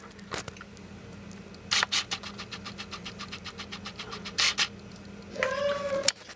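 Handling noise close to the microphone: two short knocks with a run of rapid, evenly spaced clicks between them, over a low steady hum. A brief high-pitched sound rises near the end.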